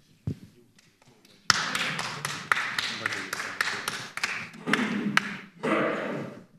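A single thump, then about a second and a half in an audience bursts into applause with laughter and voices mixed in, lasting about four seconds.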